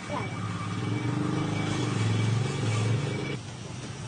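Rough, rapidly pulsing buzz of a wooden tub held against a motor-driven wheel as it is sanded; it cuts off suddenly about three and a half seconds in.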